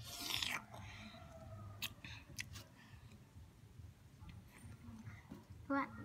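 A person sucking and chewing on a sour lime wedge: a short wet slurp at the start, then a few sharp mouth clicks and soft smacks.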